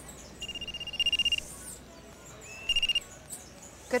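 Mobile phone ringing with a high, rapidly trilling electronic ringtone: one ring about a second long, then a brief ring near the end that is cut short as the phone is answered.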